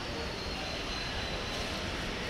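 Steady outdoor vehicle and traffic noise, with faint voices underneath.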